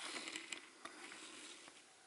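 Faint handling noise: close rustling and scraping with a few sharp clicks, lasting about a second and a half.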